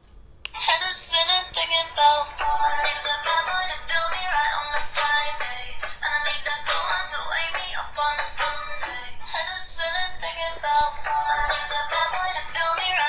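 Dancing cactus plush toy playing one of its built-in songs through its small speaker: a click about half a second in, then a synthetic singing voice over backing music that runs on.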